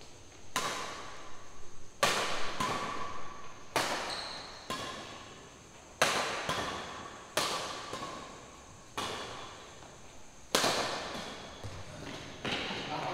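Badminton rackets striking a shuttlecock in a rally: about nine sharp hits a second or so apart, each ringing on in the hall's echo.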